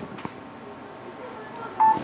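A few faint clicks, then a short electronic beep near the end as the camera is triggered to start recording again by the Ronin-S record button over the infrared cable.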